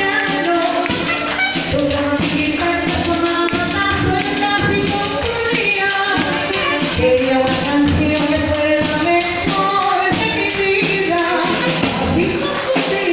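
A military regimental band playing a Latin tune live, with clarinets and other wind instruments carrying the melody over percussion keeping a steady beat.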